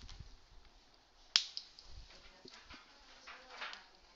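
A single sharp click a little over a second in, followed by a few fainter ticks and a soft brushing sound near the end.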